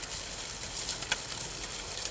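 Quiet pasture ambience: a steady faint hiss with a few soft clicks and knocks about a second in, as a small group of heifers walks over grass.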